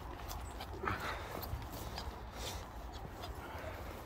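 Footsteps of a person walking on a dirt woodland path, with a steady low rumble on the microphone and scattered short clicks.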